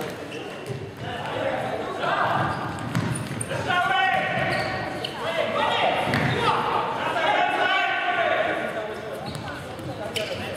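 Indoor futsal play in an echoing sports hall: players shouting to each other, loudest about four seconds in and again near the eight-second mark, over the thuds of the ball being kicked and bounced on the wooden floor.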